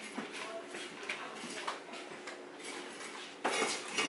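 Faint kitchen handling noises, small knocks and rustles on the counter, then a louder clatter near the end as the pineapple is set down on the plastic cutting board and a kitchen knife is picked up.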